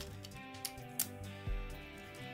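Soft background music with about three light plastic clicks from a plastic transforming robot toy's joints being turned and set by hand.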